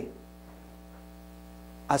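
Steady low electrical mains hum in a pause between words, with a man's speech trailing off at the start and starting again near the end.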